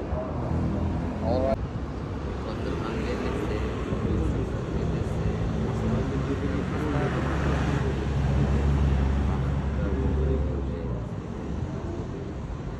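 Outdoor street noise with people's voices, and a motor vehicle passing close by in the second half, its low rumble swelling and then fading.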